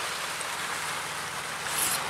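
Steady rush of water from small waterfalls spilling into a pond. Near the end, a brief high hiss as a knife blade slices through a sheet of paper.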